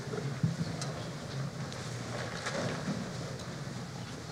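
Steady low room hum of a lecture hall, with a few faint scattered clicks and rustles.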